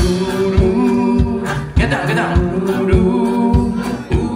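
Sea shanty band singing in several-voice harmony, with long held notes over a steady low drum beat of about one and a half beats a second.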